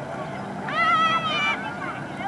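A child's high-pitched shout, lasting under a second around the middle, from schoolchildren riding a trailer towed by a pickup truck. Underneath runs the steady hum of the pickup's engine.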